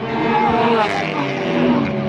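Cars driving fast along a racetrack, their engines running loud and steady, with a voice talking over them.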